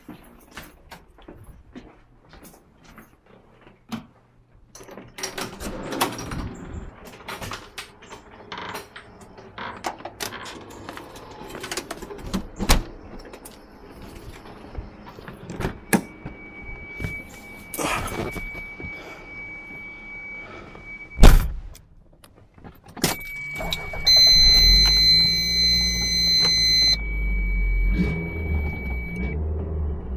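Footsteps, keys and handling noise, then a car's steady high warning chime, a car door slammed shut about two-thirds of the way through (the loudest sound), and the car's engine starting a few seconds later and idling to the end, the chime still sounding.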